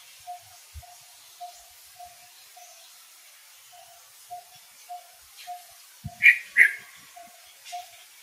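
Animal calls: a short note repeating steadily about twice a second, and two louder, sharp, higher calls in quick succession a little after six seconds in.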